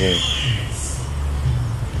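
Steady low rumble of road traffic and vehicle engines.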